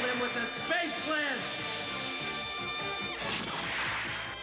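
Cartoon soundtrack of background music and sound effects: pitch-gliding effects early on, held steady tones through the middle, and a noisy crash a little after three seconds in.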